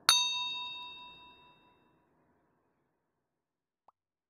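A single bell-like ding, struck once and ringing out with several clear tones, fading away over about a second and a half: an editing sound effect for the end card.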